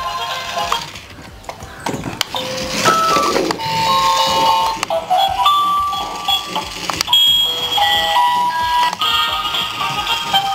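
An electronic melody of short beeping notes that step up and down in pitch, with a few clicks among them.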